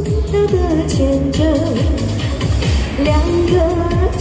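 Female voice singing a Chinese pop ballad into a handheld microphone, amplified, over a backing track with a steady beat.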